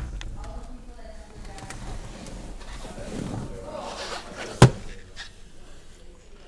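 Faint, indistinct voices in the background, then a single sharp thump a little over four and a half seconds in.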